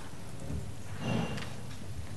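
Room noise in a pause between speakers: a steady, even hiss, with a faint brief swell about a second in.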